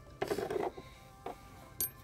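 Pliers working the brass coupling of a Mercedes GL550 rear air suspension line to loosen it: a brief rustle of handling, then two small metallic clicks, the second one sharp.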